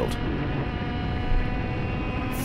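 IAME X30 125cc two-stroke kart engine running at steady high revs.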